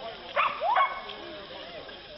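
A dog barking twice in quick succession, each bark short and rising in pitch, over background chatter of voices.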